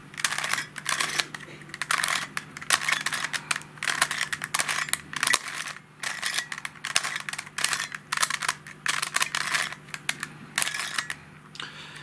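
Plastic pieces of a Helicopter Cube twisty puzzle clicking as its edges are turned in quick runs of moves with short pauses between them. These are the last turns of the solve.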